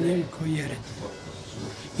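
A man speaking for about the first second, then a pause of about a second filled with a steady low hiss before speech resumes at the end.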